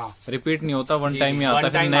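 A man speaking Hindi, pausing briefly at the start before talking on.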